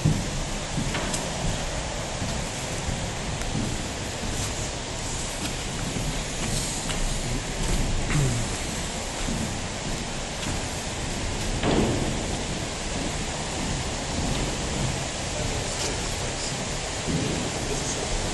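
Steady rushing, rain-like noise of water in a large indoor diving tank hall, with faint voices under it.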